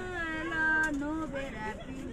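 People singing a slow song, with long held notes that slide in pitch.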